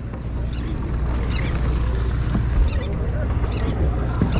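Steady low rumble of a sportfishing boat's engine, with the wash of sea water alongside.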